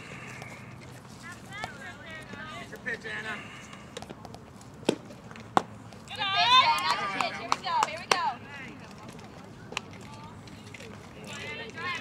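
Sharp crack of a softball bat hitting a pitch about five seconds in, with a second knock just after. It is followed by about two seconds of high-pitched yelling and cheering from players and spectators; fainter voices call out before the hit.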